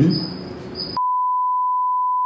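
A censor bleep: one steady beep tone, starting about a second in, that blanks out a recorded phone conversation over abusive words. Before it, a man's short 'hm' over the hiss of the recording.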